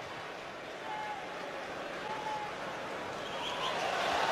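Steady stadium crowd noise: many voices of a football crowd blending into an even wash of sound.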